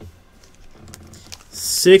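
Faint rustling and a few small light clicks as a trading card is handled at a table, then near the end a man's voice begins to speak.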